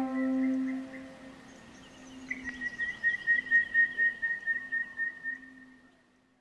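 Intro theme music. A held low note fades away in the first second or so. About two seconds in, a high whistle-like tone enters with a quick fluttering pulse and fades out near the end.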